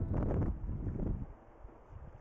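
Wind buffeting the microphone, a rough low rumble that is strongest for the first second and then falls away to a faint hiss.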